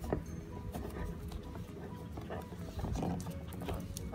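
Small clicks, knocks and rustles of hands fastening a cloth bib on a plastic baby doll and handling the plastic tray of its toy high chair.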